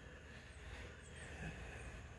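Quiet background: a faint, steady low hum and hiss with no distinct events.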